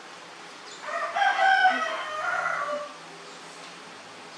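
A single pitched animal call lasting about two seconds, beginning about a second in, rising to a peak and then trailing off in a second, lower part.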